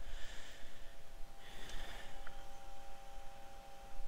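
Two short breaths blown out through the nose close to the microphone, about a second and a half apart, over a faint steady electrical hum.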